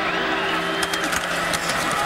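Stadium crowd noise at a college football game with a few sharp knocks about a second in, as the ball is snapped and the linemen collide.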